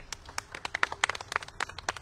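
A small group applauding with scattered, uneven hand claps.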